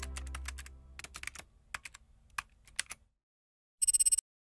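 Keyboard-typing sound effect: a run of irregular clicks over about three seconds, over the fading tail of a deep, low music note. Near the end a short, rapidly pulsing electronic trill starts.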